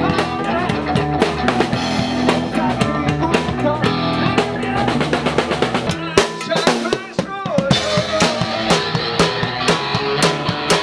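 Live rock band playing, with a drum kit and electric guitars. About six seconds in the low end drops out for a quick run of drum hits, then the full band comes back in.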